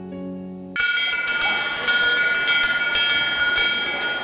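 Soft piano music breaks off under a second in, and a school bell takes over: a loud metallic ringing, struck again and again at an uneven pace.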